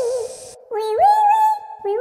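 A high-pitched, cartoonish puppet voice drawing out long, wavering, sliding notes, in a gliding, meow-like way. A steady hiss underneath cuts off about half a second in.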